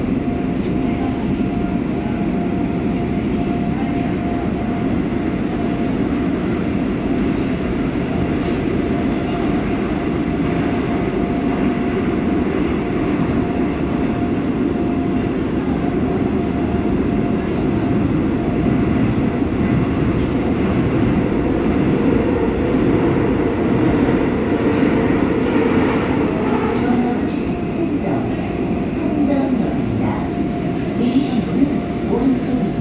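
Running noise of a Seoul Subway Line 5 train (new W503 set) heard from inside the car while it travels through a tunnel: a dense, steady rumble of wheels on rail with one steady tone running through it. The rumble grows slightly louder in the second half.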